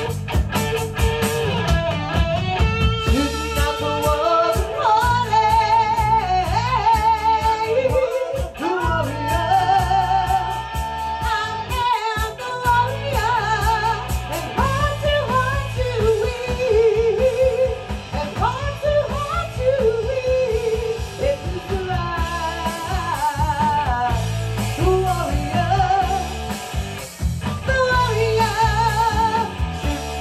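Live rock band playing: a woman singing over electric guitar, electric bass and drum kit.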